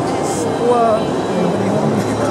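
Steady hubbub of many overlapping voices in a crowded exhibition hall, with no single voice standing out.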